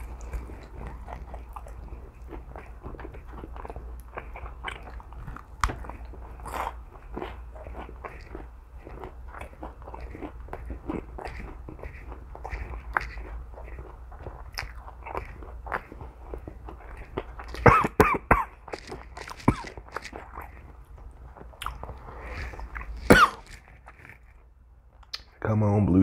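A person biting into and chewing a fried chicken wing, with many small crunching and wet mouth sounds. A few louder sudden sounds break in about two-thirds of the way through and near the end.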